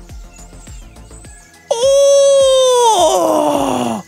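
A man's long, high wordless "oooh" of delight, starting abruptly about two seconds in, held for about a second and then sliding steadily down in pitch. Quiet background music with a steady beat runs underneath.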